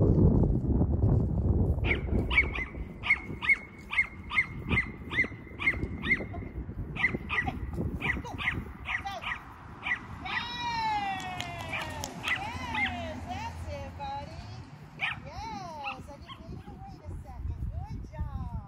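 Small dog yapping in a rapid string of high-pitched barks, about three a second, for several seconds while running an agility course. Then come a few longer high calls that slide up and down in pitch.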